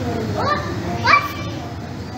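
Children's voices murmuring in a large hall, with two short, high, rising calls from a child about half a second and a second in, the second the louder.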